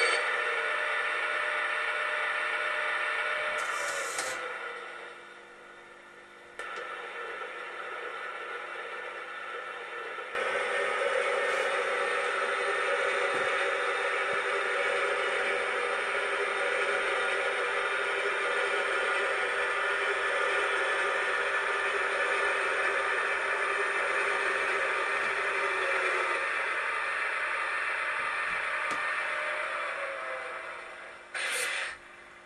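LGB 2044 G-scale model electric locomotive, fitted with a digital sound decoder, running on track with a steady running sound. A short hiss comes about four seconds in. The running sound then drops away, comes back softer, and is at full level again from about ten seconds until it fades near the end.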